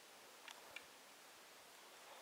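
Near silence, with two faint short clicks close together about half a second in.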